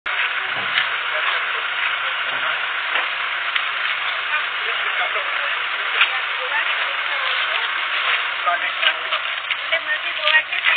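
Indistinct voices of a small group of people talking, under a loud steady hiss with scattered faint clicks.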